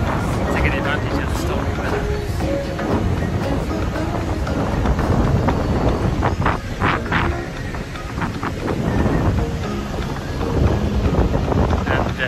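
Wind buffeting a phone's microphone in a steady low rumble, with a man's voice breaking through in snatches.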